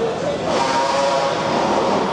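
A steady pitched tone with several overtones, starting about half a second in and held for about a second and a half, over a constant din of background noise.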